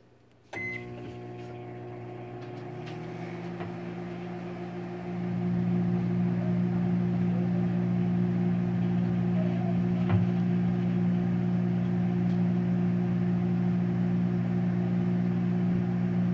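Emerson microwave oven switched on about half a second in, then running with a steady low hum that grows louder about five seconds in. The snow inside heats without any popping or sparking.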